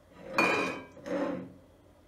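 Glass cake plate clinking and scraping against the table as a sponge cake layer is handled over it: two short clatters, the louder about half a second in with a brief ring, the second just after a second in.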